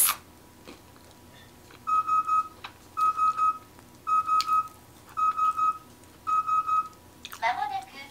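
A Japanese bath water-heater control panel sounding its alert: five bursts of quick triple beeps about a second apart. Near the end its recorded voice starts announcing 'まもなくお風呂が沸きます' (the bath will be ready soon), which means the tub is nearly filled and heated.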